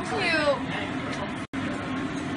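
A woman's high-pitched squeal that slides down in pitch during the first half second, over a steady low background hum. The sound cuts out suddenly and briefly about one and a half seconds in.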